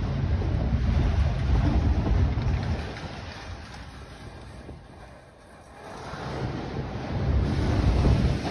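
Freight cars rolling past: a low rumble that swells early, dips about halfway through and builds again near the end, with wind buffeting the microphone.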